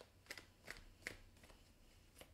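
A tarot deck being shuffled by hand: a few quiet, crisp card flicks in quick succession.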